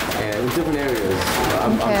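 A man speaking in English, telling about martial arts training.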